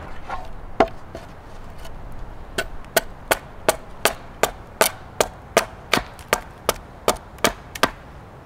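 Hand axe chopping into the edge of an upright wooden plank set on a stump, hewing it to shape. One strike about a second in, then a steady run of quick blows, about three a second, from about two and a half seconds on.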